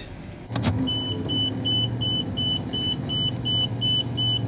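Inside a van cabin, a high electronic warning chime beeps steadily about three times a second over the low hum of the running engine, starting just after a click about half a second in.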